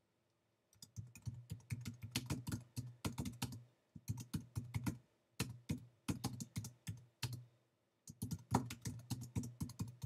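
Typing on a computer keyboard: quick runs of keystrokes in several bursts with short pauses, starting about a second in.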